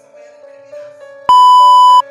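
Soft background music, then a little over a second in a loud, steady, buzzy test-pattern beep of the kind played with TV colour bars cuts in and holds.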